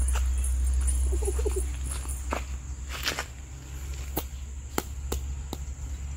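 Footsteps and a few short, sharp taps on dry dirt over a steady low rumble, with a brief faint voice-like sound about a second in.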